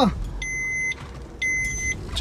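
A car's electronic warning beeper sounds two even, high beeps, each about half a second long and about a second apart, over the low hum of the car's engine.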